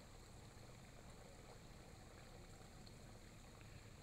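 Near silence with a faint, steady trickle of water from a small backyard rock waterfall fountain.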